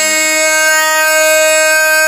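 A voice holding one long, steady sung note of a Pashto naat.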